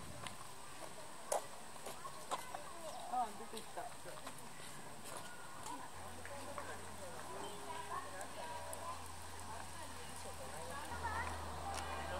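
A hard plastic storage crate knocking three times in the first few seconds as a young orangutan tips and handles it, over low chatter of voices; a low steady hum comes in about halfway.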